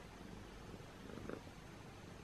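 Tabby cat purring, a faint steady low rumble close to the microphone, with one brief soft sound a little over a second in.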